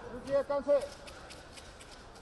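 A man's commentary voice for about the first second, then a low, steady background hum of a large hall.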